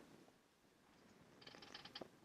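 Near silence: room tone, with a faint run of quick small clicks in the last half second.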